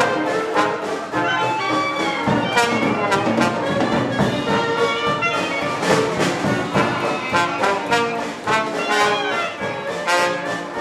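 Traditional New Orleans-style jazz band playing ensemble: trumpet, trombone and clarinet together over piano, double bass, banjo and drums, with a steady beat.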